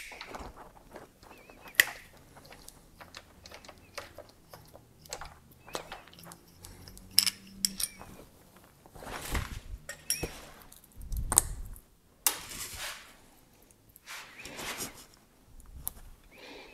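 Scattered clicks and metallic clinks as a bicycle chain is worked by hand: a chain tool pressing a link pin out, and the loose chain links knocking together. Near the end the master link is being fitted back into the chain.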